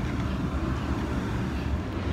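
Steady low outdoor rumble with no distinct events.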